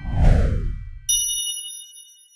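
Logo-sting sound effect: a whoosh that sweeps downward over a low rumble, then a bright chime ding about a second in that rings on and fades.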